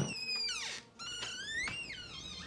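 An interior door's hinges creaking as the door swings open: two drawn-out squeaks, the first falling in pitch and the second rising.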